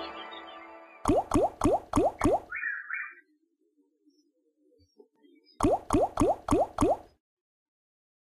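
Online slot game sound effects: the big-win music fades out. Then two spins each end in five quick rising blips, one as each reel stops, with a short two-note chime after the first set.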